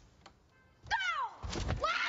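A heavy low thud of bodies hitting the sofa and floor in a tackle, amid startled shouts.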